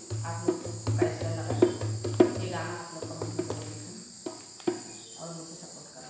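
Steady high-pitched chirring of crickets, with a run of sharp taps and short ringing notes, about two a second, over the first four seconds.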